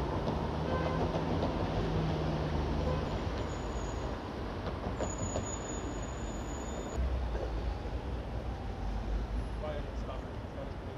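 City street traffic noise: a steady din of passing vehicles, with a low engine hum in the first few seconds and a heavier low rumble later on.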